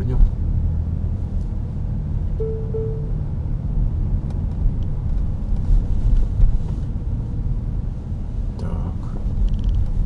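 Car cabin noise while driving slowly through city traffic and making a turn: a steady low rumble of engine and tyres. A brief two-part tone sounds about two and a half seconds in.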